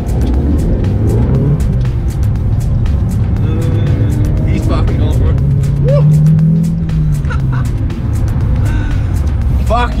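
Audi S1 engine and road noise heard from inside the cabin while driving. The engine note swells and falls back once around the middle.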